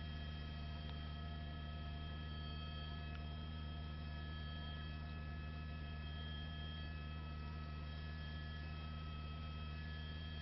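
A steady low hum with a few faint, constant high tones above it, unchanging throughout.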